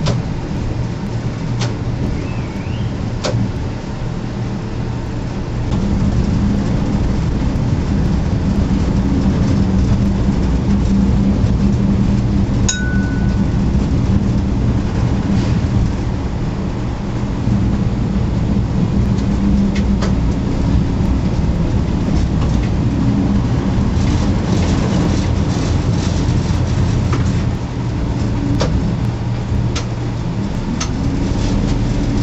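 Machinery inside the deck of the Silver Spade, a Bucyrus-Erie 1950-B electric stripping shovel, running as the upper works swing. It makes a loud, steady low hum and drone that grows louder about six seconds in, with scattered sharp clicks and clanks.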